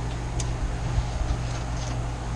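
Steady low background hum, with a faint click about half a second in.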